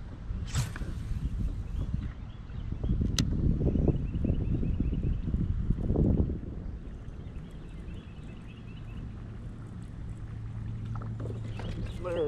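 A baitcasting rod and reel: a cast about half a second in, then the reel cranked to retrieve the lure, with a sharp click about three seconds in and a steady low whir near the end. Low rumble and faint bird chirps sit beneath it.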